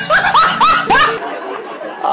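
A person laughing in about four quick, high, rising bursts during the first second, then trailing off.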